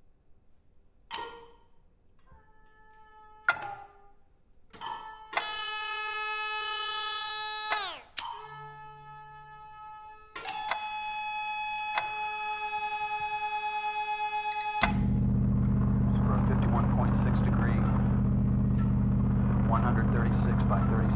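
Contemporary chamber ensemble with electronics playing. Sharp bell-like pitched notes strike about one, three and a half and five seconds in, then held tones follow, one sliding down near eight seconds. At about fifteen seconds a loud, steady buzzing hum with crackly, chattering noise above it cuts in abruptly, a played-back sample in the piece.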